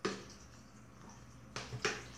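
One sharp click, then a quiet stretch, with two more short, sharp clicks near the end.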